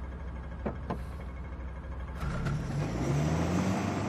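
Car engine running, growing louder about two seconds in with a low, wavering rise in pitch as the car surges up to a sudden stop.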